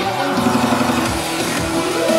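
Live electronic band music in which the kick-drum beat drops out, leaving sustained synthesizer tones that sound something like a revving engine.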